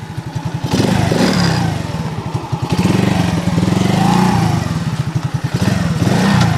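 Alpha-type horizontal single-cylinder four-stroke moped engine running at idle on the stand, a steady rapid pulse, with a clunk as the gearbox is clicked into gear and a slight rise in engine note partway through.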